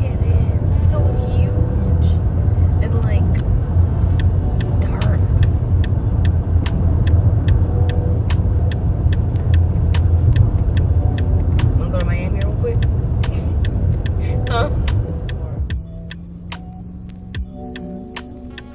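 Road rumble of a car driving on a highway, heard from inside the cabin: a loud, steady low rumble with music and a ticking beat over it. The rumble drops off sharply near the end.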